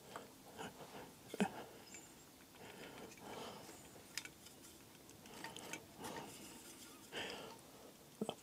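Faint, scattered small knocks and rustles of painting materials being handled at a metal paint tin, the sharpest knock about a second and a half in.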